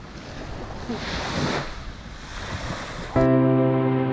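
Small waves washing onto a sandy shore, with wind on the microphone; the wash swells about a second in and then eases. About three seconds in, it cuts abruptly to calm background music with held notes.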